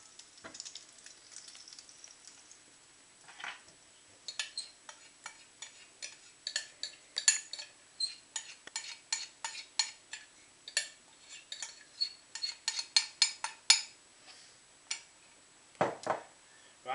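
Yorkshire pudding batter being poured into a hot pan on an electric hob, sizzling faintly at first. About four seconds in a run of sharp crackles and pops starts, several a second, and stops shortly before the end.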